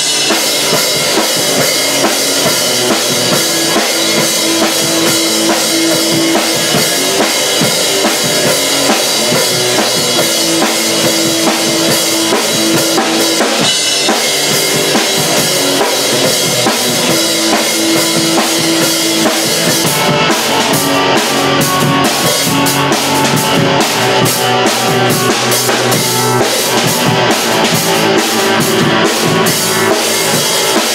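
A rock band playing live: two electric guitars over a drum kit, loud and continuous. From about halfway through, the drummer strikes the cymbals in a quick, regular beat.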